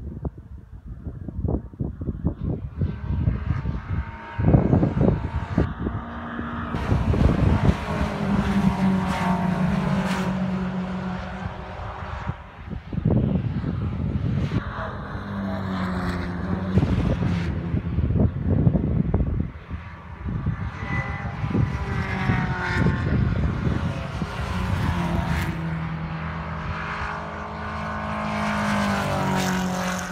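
MG racing cars passing one after another on the circuit, engines revving up and shifting gear, each swelling and fading as it goes by. Wind buffets the microphone in the first few seconds.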